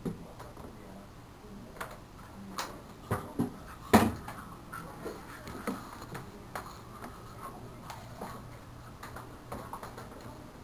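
Small knocks and clicks of toiletries being picked up and set down on a bathroom sink counter, the loudest knock about four seconds in, then a toothbrush scrubbing teeth with faint scratchy strokes.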